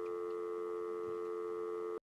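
Telephone dial tone, a steady two-note hum on the line once a call has ended. It cuts off suddenly at the end.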